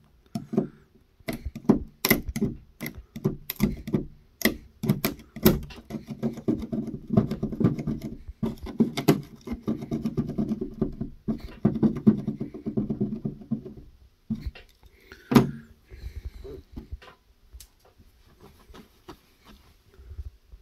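Red plastic scraper working leftover hot glue off a painted car hood: a run of sharp clicks and scratches, then a longer buzzing scrape in the middle, and one sharp knock about fifteen seconds in.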